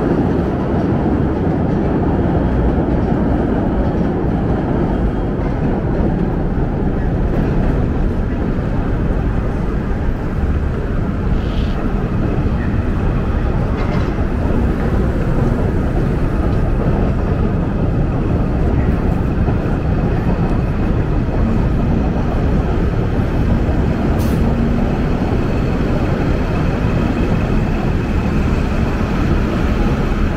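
Steady, loud low rumble of downtown city noise from passing vehicles, holding even throughout, with a couple of faint brief clicks.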